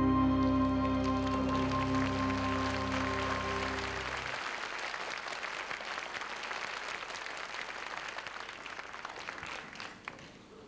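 A string orchestra holds the song's final chord, which stops about four seconds in. Audience applause rises under it and carries on alone, fading away toward the end.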